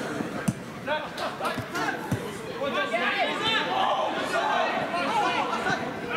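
Football players and a small crowd shouting and calling during live play, with a couple of dull thuds of the ball being kicked, about half a second and two seconds in.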